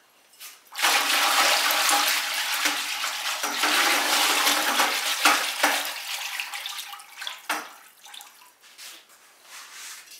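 A wire whisk stirring liquid glaze in a plastic bucket: a steady churning slosh that starts about a second in and dies away after six or seven seconds.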